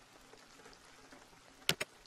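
Faint steady hiss of a rain ambience track, with two short sharp clicks near the end.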